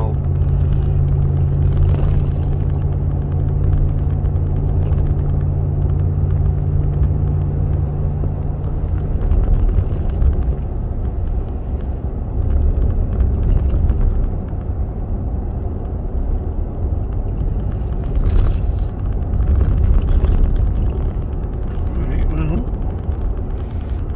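Truck driving along a road, heard from inside the cab: a steady engine drone with tyre and road rumble. The engine's hum changes about nine seconds in, leaving mostly road rumble.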